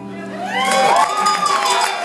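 The last strummed ukulele chord rings out and fades. About half a second in, an audience cheers and claps, with one long whoop that rises and falls.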